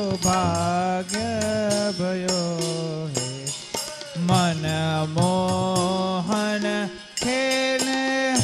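A man singing a devotional Holi kirtan in long, drawn-out notes, accompanied by harmonium and a steady percussion beat.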